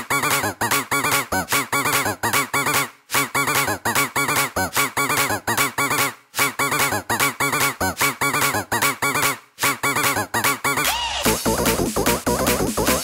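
Jumpstyle dance music in a breakdown: a chopped synth lead plays rapid short notes that bend up and down in pitch, with the deep kick and bass gone, pausing briefly every three seconds or so. About eleven seconds in, a fuller section with a new texture starts.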